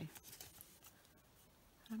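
A few faint scuffs as a round blending brush comes off the card stock, then near silence with only room tone.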